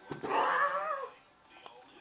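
A cat meowing once, a drawn-out meow of about a second that drops in pitch at the end.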